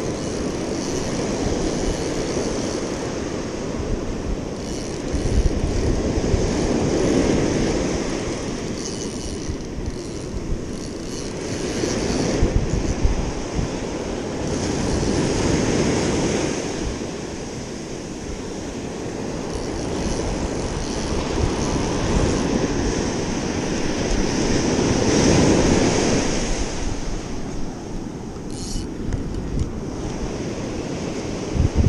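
Ocean surf breaking and washing up a sandy beach, swelling and fading every few seconds, with wind buffeting the microphone.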